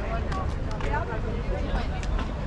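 Voices of people talking as they walk by, too indistinct to make out, over a steady low rumble of outdoor background noise.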